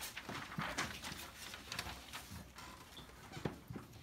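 Faint, irregular light taps and rustles of puppets being handled and moved behind a shadow-puppet screen.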